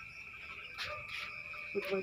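Crickets trilling steadily, a thin high continuous tone, with a couple of faint taps about a second in.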